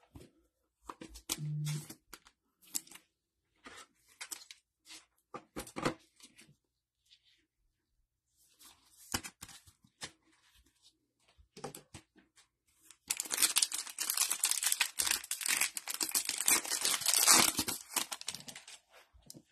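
Light clicks and rustles of trading cards being handled and slipped into plastic sleeves. About thirteen seconds in, a few seconds of continuous tearing and crinkling as a foil card pack is ripped open.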